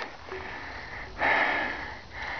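A person breathing close to the microphone: a loud breath or sniff a little over a second in, lasting most of a second, over a faint steady outdoor hiss.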